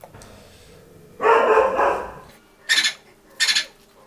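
Close-miked eating: a louder sound about a second long just after a second in, then two short crisp crunches near the end, like crisp puri being bitten and chewed.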